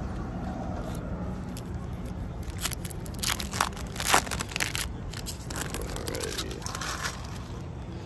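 A foil trading-card pack being torn open and crinkled by hand, in a run of sharp crackles through the middle, over a steady low background rumble.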